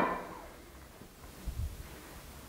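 A single sharp metallic clink at the start as a steel reaction bar is fitted to a pillar drill's tapping head. Then quiet handling, with a soft low bump about a second and a half in.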